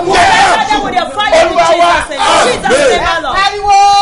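A man and a woman shouting fervent prayer at once, loud and overlapping. About three seconds in, one voice carries on alone in long, drawn-out calls that slide in pitch.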